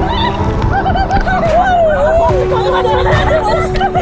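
Raft riders on a water slide shouting and whooping in high, wavering voices, over background music with held chords.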